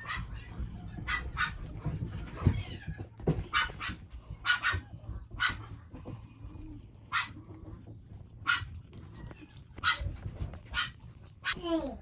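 A dog barking: about a dozen short, separate barks spaced irregularly.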